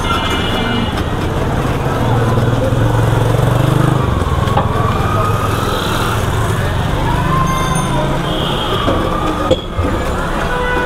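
Busy street traffic: vehicle engines, motorbikes among them, running close by in a steady rumble that swells from about two to four seconds in.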